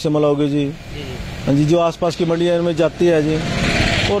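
A man speaking Hindi in short phrases with brief pauses. Near the end a rushing noise swells up, like a vehicle passing close by.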